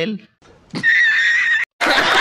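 A high-pitched squeal, held for about a second with a slight waver, followed by a sudden cut and loud laughter starting near the end.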